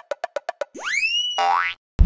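Cartoon-style sound-effect sting: a quick run of ticks, about eight a second, then a rising swoop in pitch and a springy boing, cutting off suddenly just before the end.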